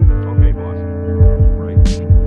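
Sampled hip-hop beat from the Koala Sampler app: several deep kick drum hits under a sustained chord chopped from a 1970s film soundtrack, with a single bright snare hit near the end.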